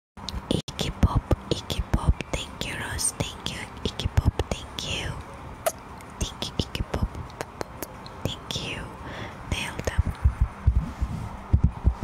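Close-miked ASMR whispering into a microphone, breathy hissing syllables with many short clicks and soft thuds of mouth sounds and lip contact right at the grille.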